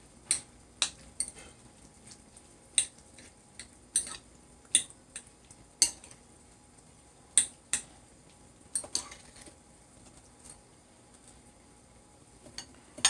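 A metal fork clinking against a ceramic bowl while sardines are mixed with onion and pepper, with about a dozen sharp, irregular clinks. The clinks stop for the last few seconds.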